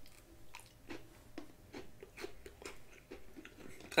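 Faint mouth sounds of drinking from a plastic water bottle: soft swallows and clicks, two or three a second.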